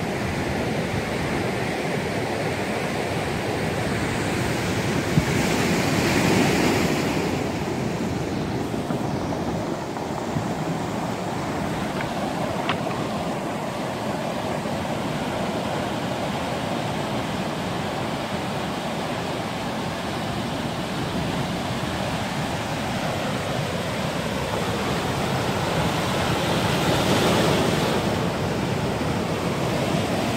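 Ocean surf breaking and washing in over a beach of rounded cobbles: a steady rush of waves, swelling louder about six seconds in and again near the end.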